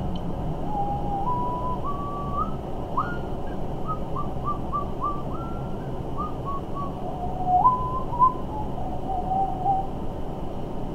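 A man whistling a tune in single clear notes. The pitch climbs step by step through the first few seconds, breaks into a run of short notes in the middle, then settles on lower held notes near the end.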